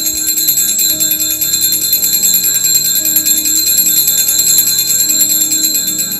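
Hand-shaken altar bells ringing continuously in a bright, rapid jingle during the elevation of the consecrated host. The ringing fades out near the end.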